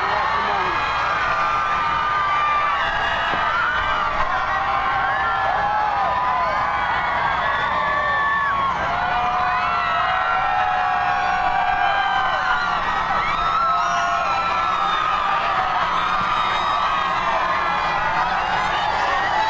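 A large street crowd cheering, whooping and shouting without a break, with many high voices overlapping.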